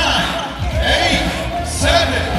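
A basketball being dribbled on a hardwood court, repeated bounces echoing in a large arena hall, with a voice carrying over the top.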